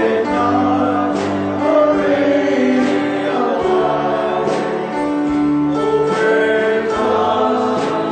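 Several voices singing a gospel song together, with instruments accompanying.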